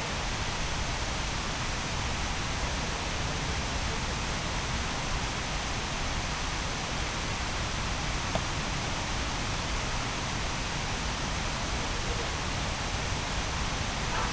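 Steady, even rushing noise of outdoor ambience, with no distinct events apart from a faint tick about eight seconds in.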